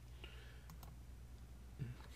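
A couple of quick, faint computer-mouse clicks about two-thirds of a second in, over a low steady hum.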